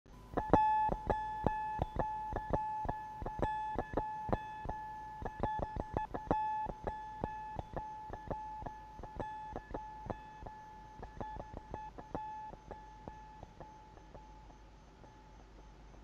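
Music of sharp plucked notes, mostly repeating one pitch with a bright ring. The notes come thick and fast at first, then thin out and fade away.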